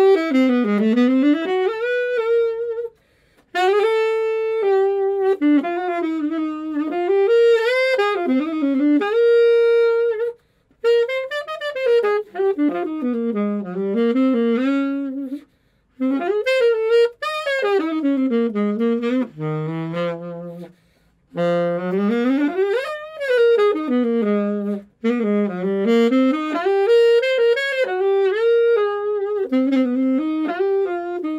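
Unaccompanied alto saxophone playing a jazz melody, one line gliding up and down through low and middle notes, with a handful of short gaps between phrases.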